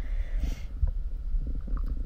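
Muffled low rumble of water moving around an underwater camera, with faint scattered ticks and a brief soft hiss about half a second in.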